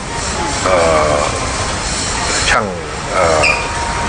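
A person speaking Thai, a few words with short pauses between them, over steady low background noise.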